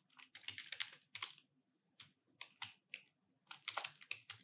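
Typing on a computer keyboard: quick, irregular keystrokes in short runs with brief pauses, heard faintly.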